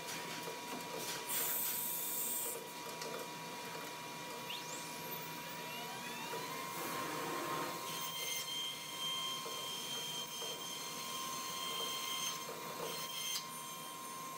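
CNC router with a spindle and drill bank machining a particleboard panel: a steady machine whine over cutting noise. There is a short hiss about a second and a half in, a whine rising in pitch about five seconds in, and further high tones joining from about eight seconds.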